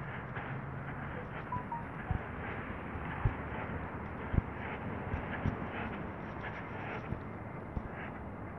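Footsteps on asphalt: a dull thump about once a second over a steady outdoor background hiss.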